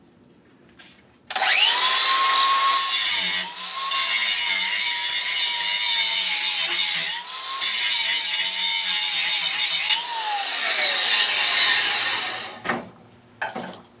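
DeWalt DCG412B 20V cordless angle grinder starts about a second in and grinds steel with an abrasive disc. Its motor pitch dips slightly as the disc is pressed in. The grinding noise drops out twice as the disc briefly leaves the metal. Near the end it is released and spins down. The disc bites well and the motor keeps its speed under load.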